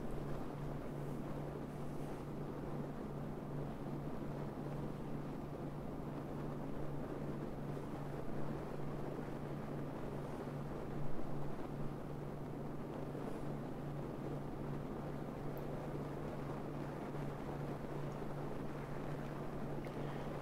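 Wind buffeting a camera microphone on the roof of a moving car, with road noise under it and a steady low hum. There is a brief louder swell about eleven seconds in.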